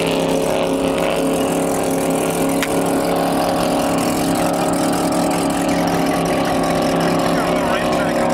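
Boat engine running at a steady speed: an even drone with a constant pitch.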